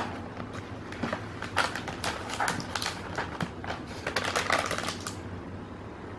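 Cardboard fast-food box and its paper lining being handled and opened: a run of light, crisp crackles and rustles, most of them in the middle seconds.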